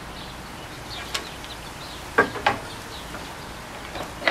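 Two sharp wooden knocks about a quarter second apart, with a faint click a second earlier, as a board is handled against the fence and table of a table saw while the saw is not running.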